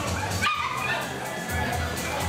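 A dog gives a short, high-pitched bark or yip about half a second in, over background music with a steady bass beat and the chatter of a crowd in a hall.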